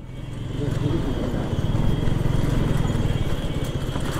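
Motorcycle engine running at low speed, a steady low pulsing hum with street noise around it.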